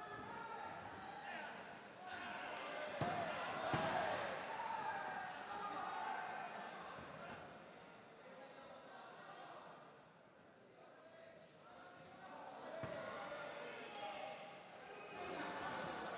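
Voices calling out around a kickboxing ring during a bout, with a few dull thuds in the ring, the loudest a pair about three and four seconds in and another about thirteen seconds in.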